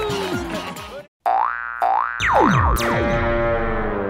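Cartoon background music ends about a second in, followed by a short channel logo jingle: two quick rising tones, a couple of falling swoops, then a held chord.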